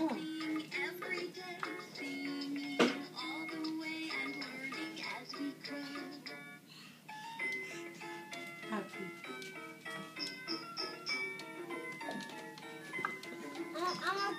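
A children's electronic musical toy playing a simple tune of plain, evenly stepped notes, with a sharp click about three seconds in.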